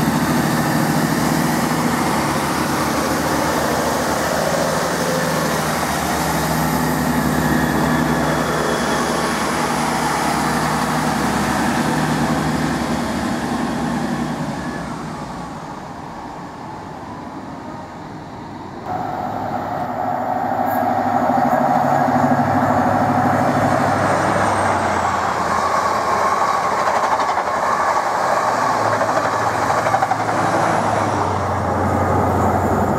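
Class 165 Turbo diesel multiple unit running past and pulling away, its diesel engine drone fading as it goes. After an abrupt change, a Class 43 High Speed Train runs through at speed, engine and wheel-on-rail noise building and staying loud.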